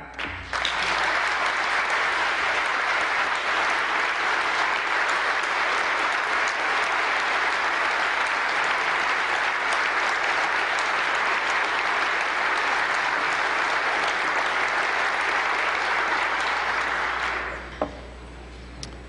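Large audience applauding steadily in a big chamber; the clapping starts within the first second and dies away shortly before the end.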